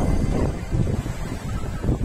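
Wind buffeting a phone's microphone, a loud, irregular low rumble that swells and dips in gusts.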